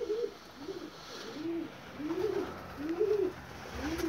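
Domestic pigeons cooing in a loft: a steady string of low, rising-and-falling coos, about six in all.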